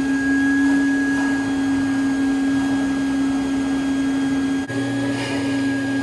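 Plush-stuffing machine's blower motor running steadily with a constant hum, blowing polyester fiberfill around its tank and into a stuffed animal. The hum drops out for an instant about three-quarters of the way through, then carries on.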